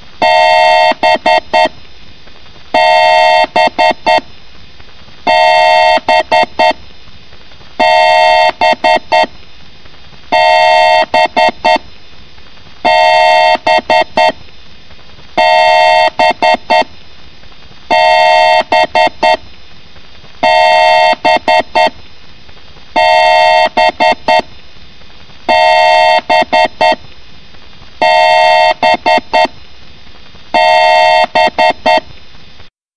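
Loud electronic two-note beep loop: a held tone of about half a second followed by four quick blips, the pattern repeating about every two and a half seconds like an alarm.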